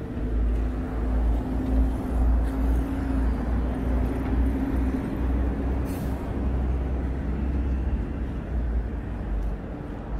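City street traffic: motor vehicles running and passing on the road, a steady low rumble with an engine hum in the first half and a brief hiss about six seconds in.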